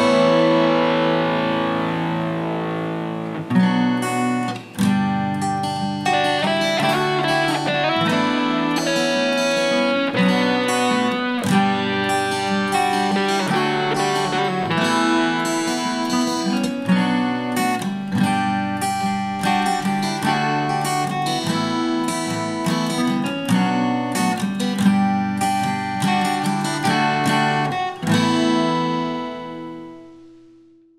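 Instrumental acoustic guitar music, a nylon-string guitar layered with a steel-string acoustic, fingerpicked and strummed. It opens on a ringing chord that dies away, and ends on a held chord that fades out.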